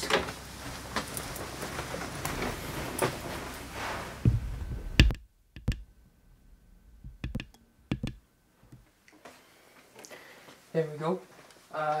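Handling noise on a camera-mounted Rode Stereo VideoMic X: rustling and footsteps, a few heavy thumps, then the background drops away suddenly and several sharp clicks come as the microphone's settings buttons are pressed. A man's voice starts near the end.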